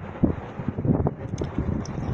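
Wind buffeting a phone's microphone in uneven gusts.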